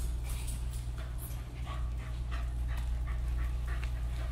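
A young corgi moving on a hard floor: a string of short, irregular ticks and small dog sounds.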